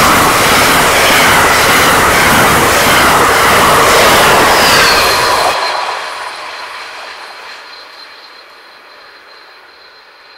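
Amtrak passenger cars passing close at speed: a loud, steady rush of wheels on rail and air that drops off sharply about five and a half seconds in as the last car goes by, then fades as the train moves away, leaving a thin high steady tone.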